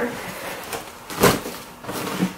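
Fabric rustling as a bulky piece of clothing is pushed down into a soft-sided suitcase, with one sharper rustle about a second in.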